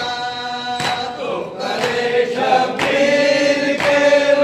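Male voices chanting a noha, a Shia mourning lament, in long held lines through a microphone and loudspeakers. Sharp beats come about once a second.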